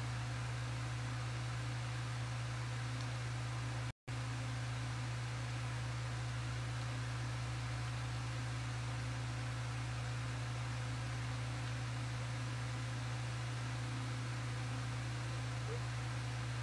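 Steady low hum under a constant even hiss, with no other sound. The audio drops out completely for a split second about four seconds in.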